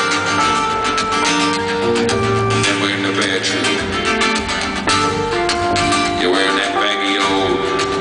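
Live band music: acoustic guitars and a keyboard playing an instrumental passage of a song, heard through an arena PA.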